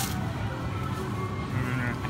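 Supermarket ambience: a steady low hum with faint background music playing, and a brief snatch of music or a distant voice near the end.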